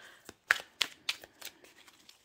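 A deck of oracle cards being hand-shuffled, cards dropping from one hand into the other in a run of short, sharp snaps, about three a second, the loudest about half a second in.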